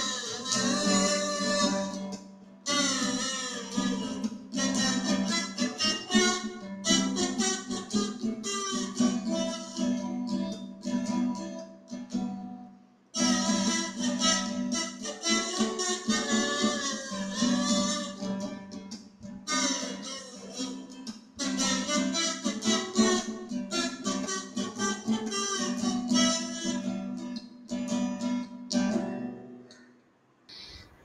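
Acoustic guitar strummed in steady chords while a metal kazoo, hummed into, carries a buzzy melody over it. There are short breaks between song sections about two and a half seconds and thirteen seconds in, and the playing stops near the end.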